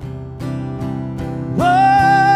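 Live country band playing: acoustic guitars strummed about two and a half times a second over sustained keyboard chords. About a second and a half in, a long held melodic note comes in and the music gets louder.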